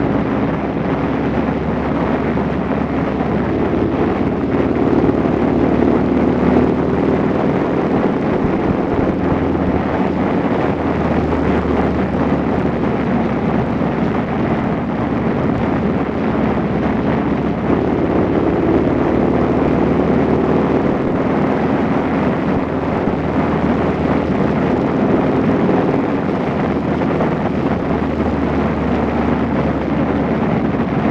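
Motorcycle engine running at a steady cruise, its drone shifting slightly in pitch as the road speed changes, with wind rushing over the phone's microphone.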